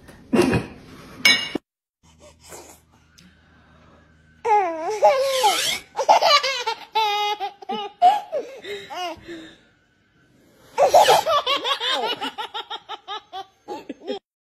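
A baby laughing heartily in long runs of laughter, ending in a rapid string of short laughs. Two short, loud sounds come in the first second and a half.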